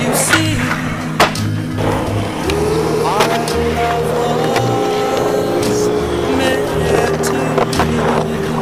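Skateboard wheels rolling on a concrete skatepark, with a few sharp knocks of the board, under a song with a steady bass line.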